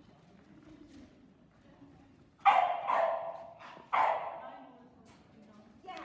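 A dog barks loudly twice, about a second and a half apart, each bark trailing off in the echo of a large hall.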